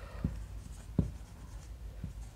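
Felt-tip marker writing on a whiteboard: faint pen strokes with light taps as letters are formed, the clearest tap about a second in.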